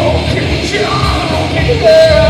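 Live rock band playing loud, with electric guitars, bass and drums, and a singer's voice over the band.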